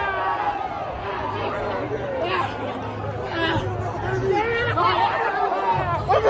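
Excited chatter of several people talking and shouting over one another, no single voice clear.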